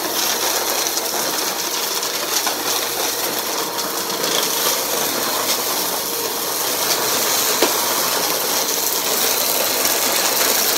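Eureka upright vacuum cleaner running as it is pushed back and forth over carpet through a pile of debris. Small bits rattle and click as they are sucked up through the nozzle.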